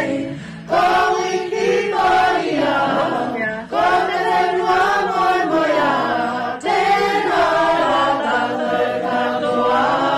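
A group of voices singing a song together in phrases, with short breaks about every three seconds.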